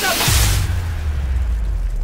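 Hiss of water spraying from a burst overhead pipe that cuts off about half a second in, as a deep, sustained low bass boom from the trailer's soundtrack comes in.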